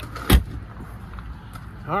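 An RV's hinged exterior compartment door (the water-station hatch) being swung shut, closing with a single sharp slam about a third of a second in.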